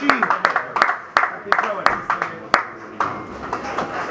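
A few people clapping, loose and irregular claps over the first three seconds, with voices talking.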